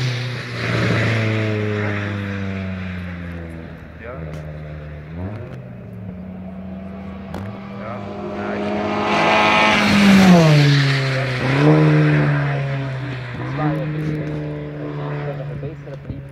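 Seat Leon TCR race car's turbocharged four-cylinder engine (about 300 to 350 hp) driven hard through a series of corners. Its pitch sags early on, climbs sharply about five seconds in, and rises to its loudest around ten seconds in before dropping back at a gear change and climbing again.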